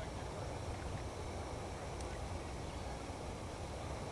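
Steady outdoor background noise: a low rumble with a faint hiss above it and one or two faint ticks, with no distinct source standing out.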